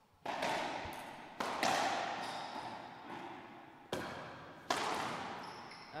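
Racquetball rally: five sharp cracks of the ball off racquets and the court walls, a second or so apart, each ringing out in the enclosed court's echo.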